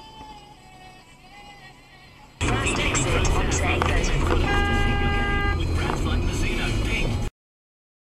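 After a fairly quiet opening, loud in-car driving noise comes in abruptly. Over it a car horn sounds once, a steady blast of about a second. The sound then cuts off suddenly near the end.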